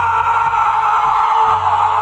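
A man screaming: one long, loud, unbroken yell whose pitch sinks slightly toward the end.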